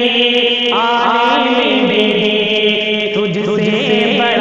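Male voice singing a devotional Urdu kalam (naat/manqabat) in long, ornamented held notes that glide up and down, over a steady held drone underneath.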